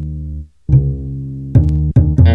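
Background music: sustained low bass-register notes that stop briefly about half a second in and come back, with a couple of sharp drum hits near the end.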